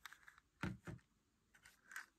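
Small plastic bowls holding Skittles being moved on a table: a few faint taps and clicks, the loudest a little over half a second in.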